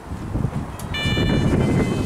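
An elevator's electronic chime: several steady tones sound together, starting about halfway through and held to the end. Under it is rumbling wind noise on the microphone.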